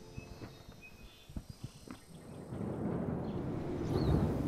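Hooves of several horses thudding irregularly on turf as they run. About two and a half seconds in, a louder, steady rumbling noise sets in and keeps building.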